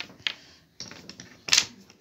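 Wooden toy pieces tapping and clacking on a tabletop as they are set down, a few light taps and one sharper click about three-quarters of the way through.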